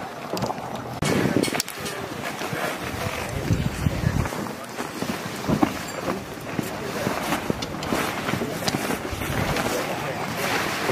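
Wind rumbling on the microphone, with scattered voices and the rustle and flap of nylon tent fabric and a camouflage tarp being handled, broken by short clicks.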